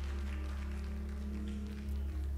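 Live gospel band music with no singing: held chords over a steady, deep bass.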